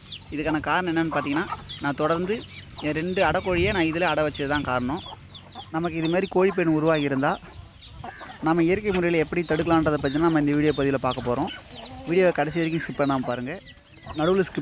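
Hen calling in a run of drawn-out, wavering clucks, grouped in phrases of a second or two with short pauses between them.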